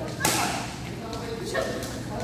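Badminton racket smashing a shuttlecock: one sharp crack about a quarter second in, followed by a softer second impact near the end.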